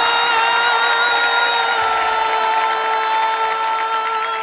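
One long note held steady at a single pitch, slid up into just before and released just after, over audience clapping, closing out a live Bollywood-style musical performance.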